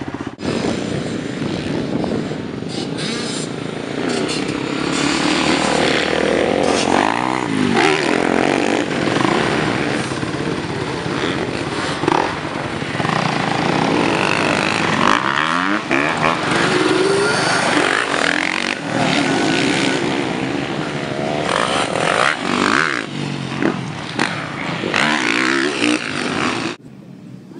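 Motocross dirt bike engine running on a dirt track, revving up and down repeatedly as the throttle opens and closes through the ride.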